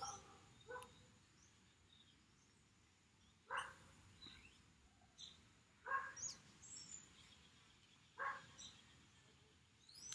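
Quiet outdoor ambience with faint bird calls: four short rising calls, the first weak, about a second in, then roughly every two and a half seconds.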